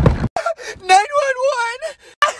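A man's voice wailing one long, wavering note at full volume, after a short, loud, rough yell at the start.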